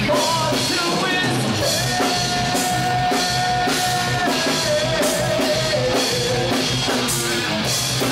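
Rock music played by a band with a drum kit, electric guitar and vocals. A long held note sounds from about two seconds in and then steps down in pitch.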